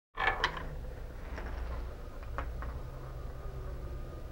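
Phillips screwdriver backing a mounting screw out of a trolling motor's plastic side plate: small clicks and creaks, the loudest cluster just after the start, then a few fainter ones over a low steady hum.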